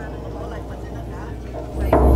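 Indistinct murmur of voices in a hall over a steady low hum. Near the end, loud low-pitched ritual music starts with a drum stroke.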